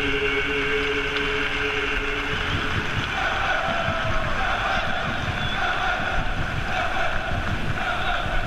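Singing over the stadium sound ends on a long held chord about two and a half seconds in, followed by a murmur of voices. Wind rumbles on the microphone throughout.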